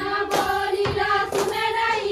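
A group of women singing a Chhattisgarhi Suwa dance song in unison, with sharp hand claps about once a second, two falling in this stretch.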